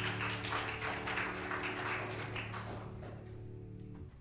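A held piano chord dies away at the end of a song while a small audience claps; the clapping thins out and fades about two and a half seconds in.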